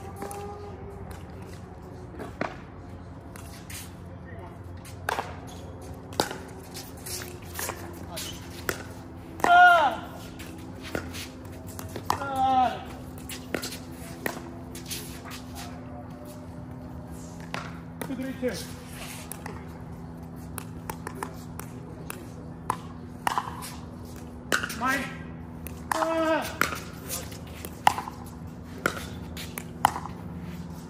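Pickleball doubles rally: paddles hitting the plastic ball in sharp, irregular pocks, with players' short shouts between the hits, the loudest shout about ten seconds in. A steady low hum runs underneath.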